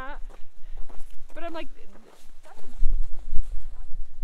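Footsteps crunching on packed snow, with two short wavering vocal sounds in the first two seconds and a low rumble of wind on the microphone, strongest about three seconds in.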